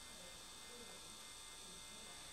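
Near silence: room tone with a faint, steady electrical hum and hiss.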